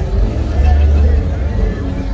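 Music with a heavy bass coming over a loudspeaker sound system, under the voices of people in the street. No fireworks go off.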